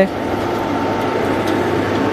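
Automatic noodle-making machine running steadily, its electric motor driving the rollers and cutter: an even mechanical noise with a constant whine.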